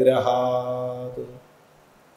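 A man's voice chanting a Sanskrit verse, holding one long steady syllable that ends about a second and a half in.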